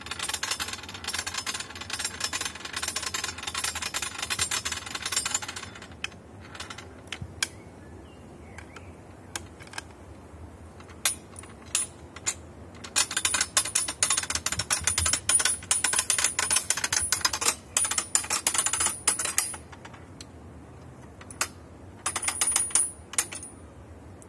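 A wooden torsion ballista being spanned with a hand lever, its drawing mechanism giving rapid trains of sharp clicks like a ratchet and pawl. There are three runs of clicking, over the first five seconds, again from about thirteen to nineteen seconds, and briefly near the end, with single clicks in between.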